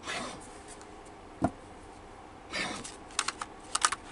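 Tarot cards being handled on a cloth-covered table: a soft sliding swish near the start and another about two and a half seconds in, a single knock in between, and a quick run of light clicks near the end as a card is laid down.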